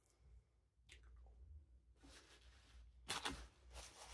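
Quiet chewing of a McDonald's hash brown, with a few short crackly sounds about three seconds in.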